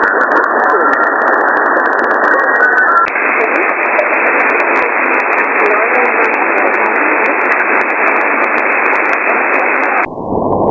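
Shortwave receiver audio on 6180 kHz in sideband mode: a steady hiss of band noise with faint traces of a weak signal beneath it. About three seconds in, the receive filter is switched and the hiss becomes slightly brighter; at the very end it turns abruptly narrower and duller.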